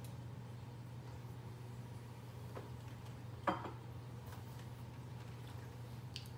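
Quiet room with a steady low electrical hum. There is a faint click about two and a half seconds in and a louder short knock about a second later.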